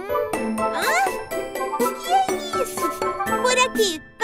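Playful children's cartoon background music with tinkling, bell-like notes and quick rising and falling sliding tones.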